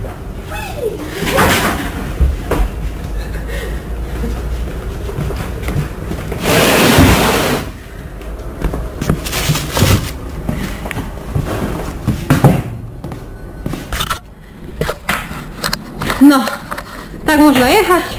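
Crates being loaded onto a truck trailer's wooden floor: irregular knocks, bumps and rolling noises, with a loud rushing noise lasting about a second and a half midway. Voices are heard near the end.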